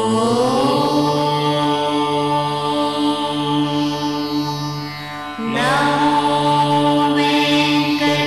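Devotional ident music: a long held chanted note over a steady drone. The note slides up into pitch at the start, fades a little, and a second held note slides in about five and a half seconds in.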